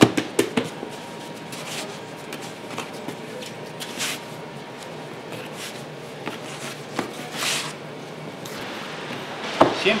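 Hands folding and shaping bread dough into a round loaf on a floured wooden bench: soft pats and knocks of dough on wood, with a few sharper knocks in the first half-second and brief rustles about four and seven and a half seconds in.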